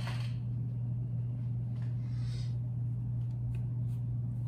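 A steady low hum runs under a faint scratchy swish of a bristle paintbrush dabbing on canvas about two seconds in, with a few small ticks near the end.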